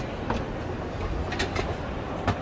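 Escalator running: a steady low mechanical rumble with a couple of light clicks.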